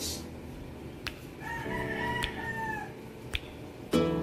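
A rooster crowing once, a single long call starting about a second and a half in, with a few faint clicks.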